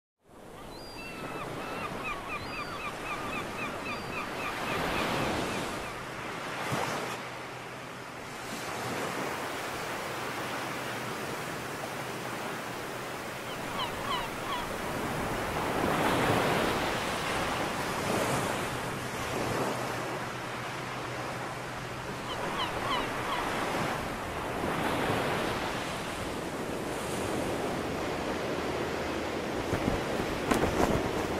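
Sea waves washing ashore in slow swells, with wind. Birds call over it: a quick run of repeated chirps near the start and a few short chirps later on.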